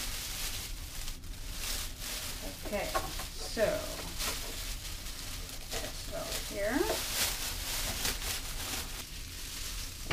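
Plastic liner bag crinkling and rustling as a full bag of used cat litter is pulled from a litter disposal bin and handled, with the litter shifting inside it. Two brief voice sounds break in, about three and seven seconds in.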